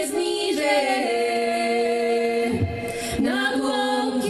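Four women's voices singing a cappella in close harmony, holding long notes; the chord shifts about a second in and a new chord starts near the end.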